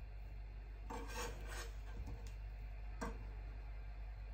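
Kitchen knife slicing through a banana and scraping on a wooden cutting board: a few short cuts about a second in and one more near three seconds.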